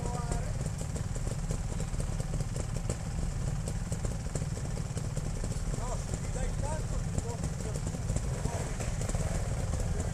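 Trials motorcycle engine idling close by, a steady low rumble, with faint voices of other riders calling out from down the trail.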